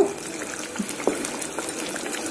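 Egg and drumstick curry simmering in a nonstick pan: a steady soft bubbling with fine crackles, the sauce just thinned with water.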